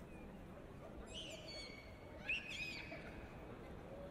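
Two short high-pitched squealing calls, about a second in and again about two and a half seconds in, the second louder, over the low hum of a busy pedestrian street.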